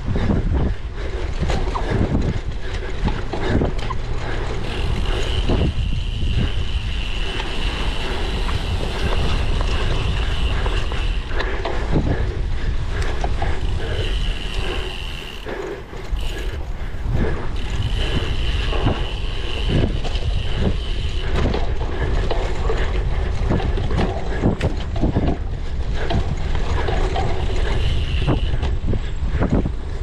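Wind buffeting the microphone on a cyclocross bike ridden fast over bumpy grass. Many short knocks and rattles come from the bike hitting the rough ground, and a faint high-pitched tone comes and goes several times.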